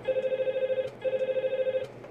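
Office desk telephone ringing with an electronic ring: two rapidly pulsing bursts, each just under a second, with a short gap between, signalling an incoming call.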